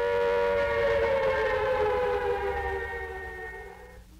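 Air raid siren wailing: its tone climbs slightly, then slides down and fades away toward the end.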